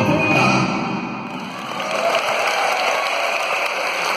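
A live band of saxophones, electric guitars, drums and keyboard plays the last notes of a song. The music stops about a second in, and audience applause carries on.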